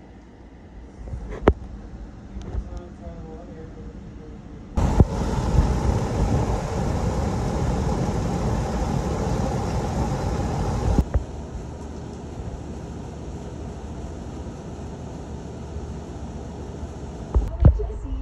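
Electric fans running. First comes a ceiling fan's faint steady whir with a couple of clicks. About five seconds in, the loud rush of air from a wheeled drum floor fan starts abruptly and cuts off about eleven seconds in, leaving a quieter steady fan noise.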